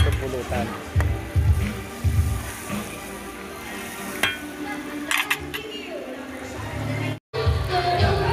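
Pork intestines and liver sizzling and bubbling in a pan. A metal utensil clinks against the pan a few times. Music starts near the end.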